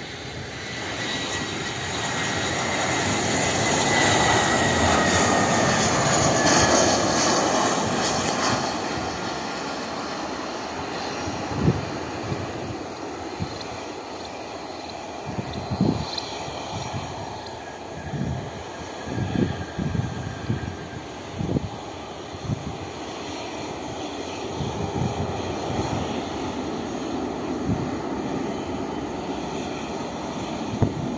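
Twin-engine jet airliner on low final approach, its engine noise swelling to a peak a few seconds in, with a whine that slides down in pitch, then fading as it passes. In the second half, gusty wind thumps on the microphone.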